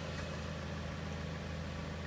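A car engine idling: a steady, even low hum.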